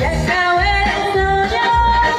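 A woman singing a melodic song into a microphone over music with a steady bass beat.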